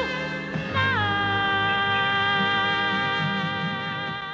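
A female singer with band accompaniment ends a slow jazz ballad. About a second in she slides onto a long held final note that fades slowly.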